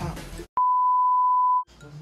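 An electronic bleep: one steady, loud high-pitched tone lasting about a second, starting with a click, with dead silence just before and after it.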